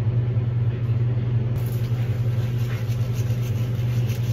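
A steady, fairly loud low-pitched rumble or hum, even throughout, with no distinct strikes or clicks.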